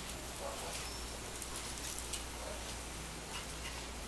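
Dogs' claws ticking faintly and sparsely on a concrete patio, over steady background noise.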